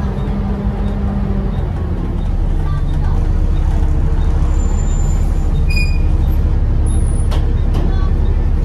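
Volvo B7TL double-decker bus heard from the upper deck: its diesel engine and cooling fans make a deep, steady drone that grows a little louder two to three seconds in as the bus pulls harder. A short high beep sounds about six seconds in.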